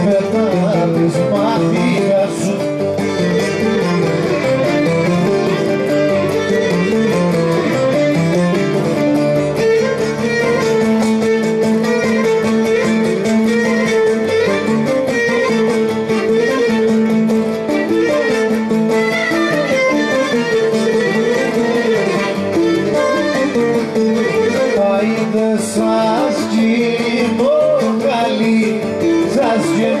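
Cretan folk music: a bowed string melody over a plucked string accompaniment, playing without a break.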